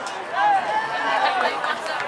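Several people shouting and calling out over one another in raised, drawn-out voices, the loudest call about half a second in.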